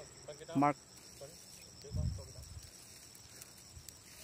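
Insects in the grass chirping with a faint, high, evenly pulsed trill that runs on steadily, with a soft low thump about two seconds in.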